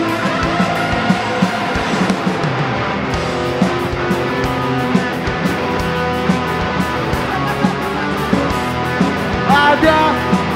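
Live rock band playing at full volume: held electric guitar notes over a steady drum beat, with a voice coming in near the end.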